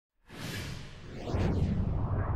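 Intro sound effect: a swelling whoosh that sweeps down in pitch and builds into a low rumble about a second and a half in.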